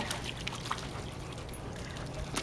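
Water trickling and dripping off a wet corgi's coat as it climbs out of a pool onto the tiled edge, with scattered small ticks.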